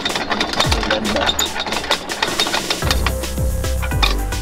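Background music with a fast, rapidly clicking beat.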